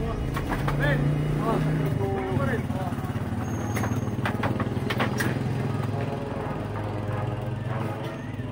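Steady low drone of a small engine running, with people talking in the background.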